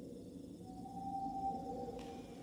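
Low, dark soundtrack drone with a single steady high tone that enters about half a second in and is held.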